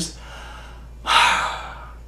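A man's single heavy breath, a noisy rush of air starting about a second in and fading away, between quiet pauses in his talk.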